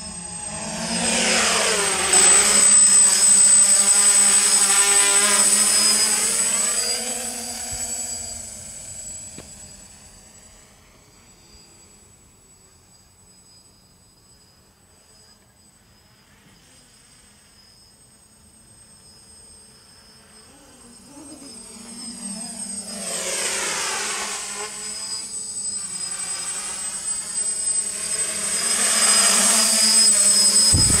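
DJI F450 quadcopter's propellers and motors buzzing loudly as it passes close, with a sweeping, shifting pitch. The buzz fades to faint as it flies off a few seconds in, then grows steadily louder again in the second half as it comes back in close.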